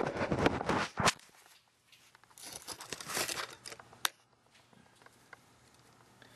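Handling noise from the camera being picked up and set down, ending in a sharp knock about a second in. Then comes a patch of rustling and a couple of light clicks as steel machinist's parallels are laid against the lathe's three-jaw chuck.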